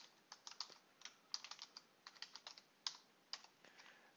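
Faint computer keyboard typing: a run of irregular keystrokes that thins out near the end.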